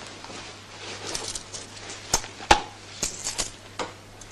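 A few light clicks and knocks of small objects being handled, over steady hiss and a low hum, as a twenty-five-haléř coin is fetched to serve as a screwdriver.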